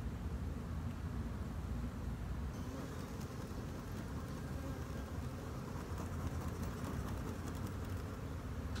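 Honeybees from a swarm buzzing in a steady hum, with a low rumble underneath.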